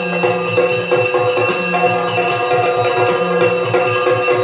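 Yakshagana ensemble music with no singing: a steady drone under quick, even drum strokes, about six a second. Bright ringing of cymbals and jingling bells runs over the top.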